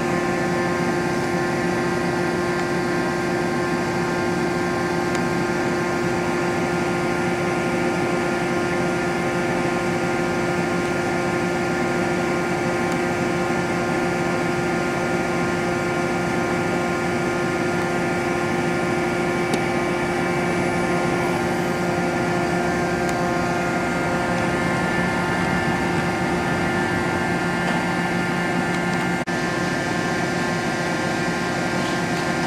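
Okuma Multus B400-W multitasking CNC lathe running a program under power: a steady machine hum with several steady whining tones from its spindle and axis drives, unchanging throughout.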